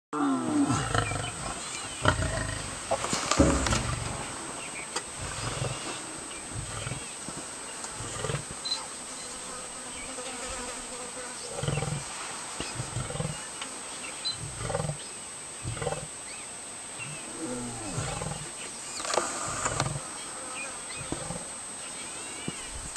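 A mating pair of African lions, male and lioness, snarling and growling at each other. The loudest, longest growls come in the first few seconds, then shorter growls follow every second or two.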